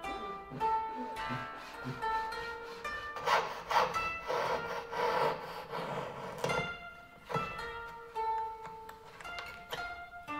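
Hand saw strokes cutting wood, coming in bursts with the longest run in the middle, over plucked-string background music.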